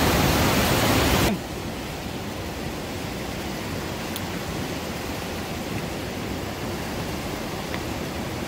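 Steady rushing of the river through the Gornerschlucht gorge, an even roar of white water. It is louder for about the first second, then drops suddenly to a lower steady level.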